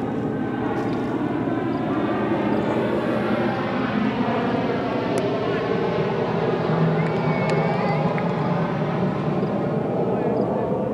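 A loud, steady engine drone that swells a little toward the middle, with voices over it. One sharp crack about five seconds in, a cricket bat striking the ball.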